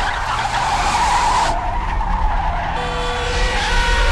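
Car tyres screeching in a skid over a low engine rumble. A steadier, higher-pitched squeal takes over about three seconds in.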